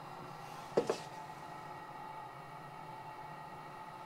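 Faint, steady hum of a preheated, empty gas-fired drum coffee roaster running before the beans are charged. A short vocal sound comes about a second in.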